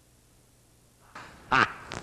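A man laughing in short loud bursts, "ha, ha", a theatrical gloating laugh that starts about a second in after near silence.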